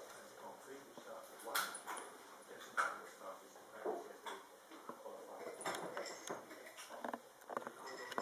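Domestic cat making several short, quiet cries at irregular intervals.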